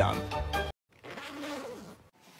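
A man's voice over background music that cut off abruptly under a second in; after a brief silence comes a fainter, wavering hum.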